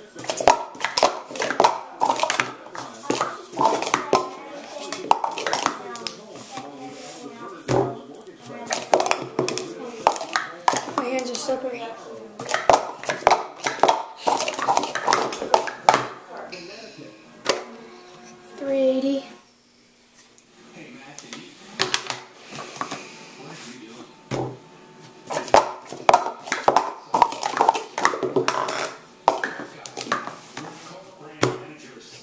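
Plastic sport-stacking cups being rapidly stacked up and down on a stacking mat, in fast runs of hard plastic clicks and clatter. A quieter pause comes a little past the middle, where a voice is heard, and then the clatter resumes.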